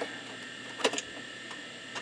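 A 3.5-inch floppy disk pushed into the Amiga's drive: one short click a little under a second in, over a steady background hum.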